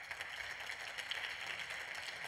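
Steady applause from a group of seated parliamentarians clapping their hands.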